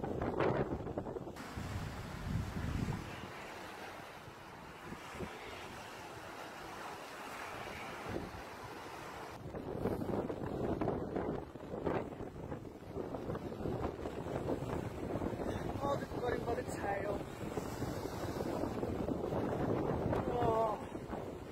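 Wind buffeting the microphone over waves breaking on a sandy shore, the wind gusting unevenly throughout. Faint voices come in briefly a few seconds before the end.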